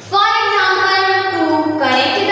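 A high voice drawing out one long word in a sing-song way for well over a second, with a new syllable starting near the end.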